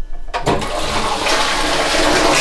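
Toilet flushing: a pull on the cistern's handle, then water rushing loudly into the bowl from about a third of a second in.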